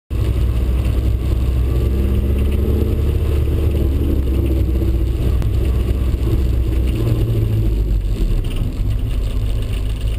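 A Toyota MR2 Spyder's 1.8-litre four-cylinder engine running at low speed, heard from inside the cabin as a steady drone. Its note drops lower about eight seconds in.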